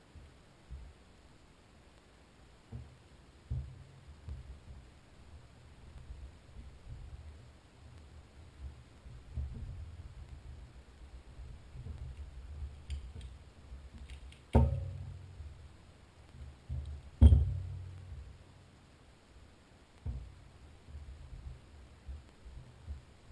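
Handling noise as gloved hands work the small parts of an outboard's VRO fuel pump on a towel-covered table: low bumps and small clicks, with two sharp knocks a few seconds apart past the middle that are the loudest sounds.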